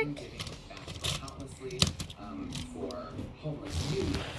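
Toy wooden trains and a clear plastic storage box being handled: a few sharp clicks and knocks, under faint voices in the background.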